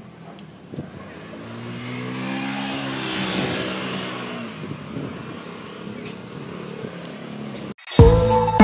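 A motor vehicle's engine passing close by. It grows louder over a couple of seconds, peaks about three seconds in with a rush of tyre and wind noise, then fades away.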